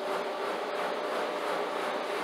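Triple S 175 rpm low-speed floor buffer running steadily on carpet, its pad set off-centre so the machine wobbles in an orbital motion: an even motor hum with a faint constant tone.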